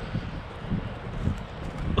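Wind buffeting the camera's microphone: an uneven low rumble that rises and falls.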